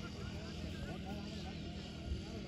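Distant voices of several people talking over a steady low rumble.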